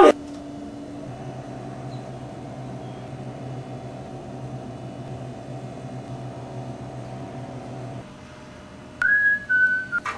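A steady low hum that cuts off about eight seconds in, then a short, loud whistled note that steps down in pitch near the end.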